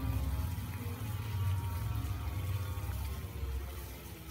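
Soup boiling in a wok on the stove: a steady low bubbling rumble that grows quieter near the end.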